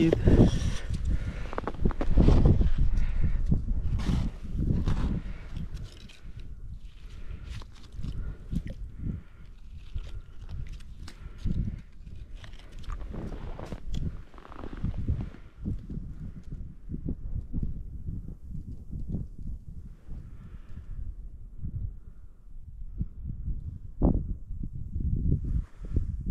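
Handling noise of ice fishing in snow: an ice skimmer scraping and knocking slush out of a fishing hole and snow crunching, over low wind rumble on the microphone. The sounds are loudest and busiest in the first few seconds, then fall to scattered quieter knocks.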